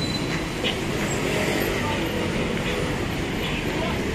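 City street ambience: a steady wash of traffic noise with faint voices of passers-by.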